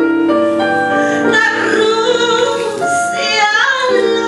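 A woman singing into a microphone, with keyboard accompaniment; she holds long notes, with a wavering, rising phrase late on.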